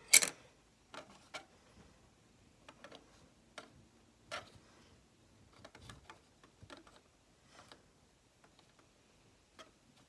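Small plastic toy pieces clicking and tapping as a miniature pizza on its tray is set down and shifted about on a plastic dollhouse table. A sharp click comes at the very start, followed by scattered light taps.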